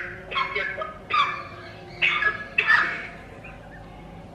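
A woman's stifled giggling: about four short breathy bursts of laughter in the first three seconds, held back behind her hand, then dying down.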